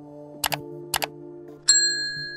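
Subscribe-button animation sound effects over soft background music: two quick double mouse clicks about half a second apart, then a bright notification-bell ding near the end that rings on.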